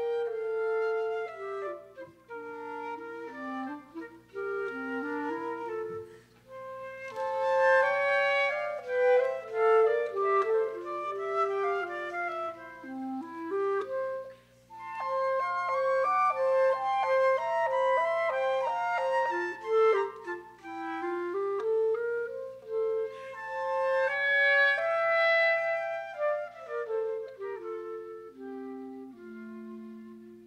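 A flute and a clarinet playing a classical duo live, their two melodic lines weaving together. Near the end the piece closes with a falling run down to a low clarinet note.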